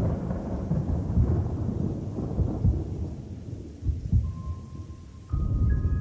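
Thunder rumbling with rain, slowly dying away; about five seconds in a deep rumble comes back suddenly as a few sustained high musical notes come in.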